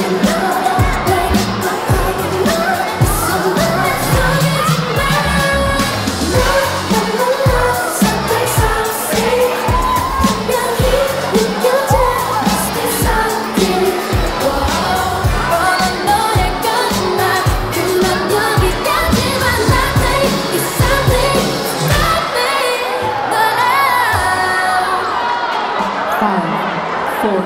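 A pop song with a singing voice and a steady beat. The beat drops out about four seconds before the end.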